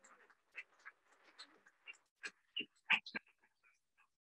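Scattered faint clicks and knocks at a lectern microphone, a few sharper ones about two to three seconds in, as people move and handle things around the lectern.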